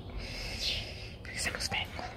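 A woman's soft, half-whispered speech fragments over a steady low background rumble.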